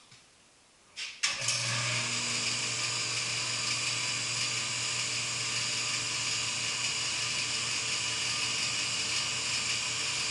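An electric shop power tool switched on with a click about a second in, then running steadily at full speed: a low motor hum under a high, even whir.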